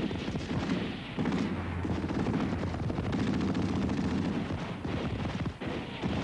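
Sustained automatic-rifle and machine-gun fire, many rapid shots overlapping, with brief lulls about a second in and again near the end.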